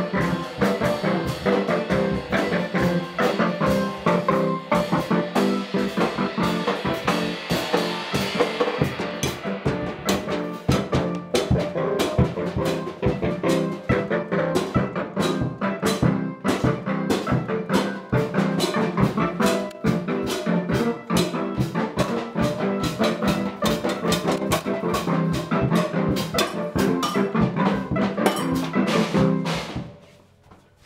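Free improvised music on small keyboards and found-object percussion: a fast, dense clatter of hits over held keyboard tones, cutting off abruptly at the end.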